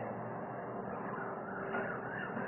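Steady background room noise with a faint continuous hum.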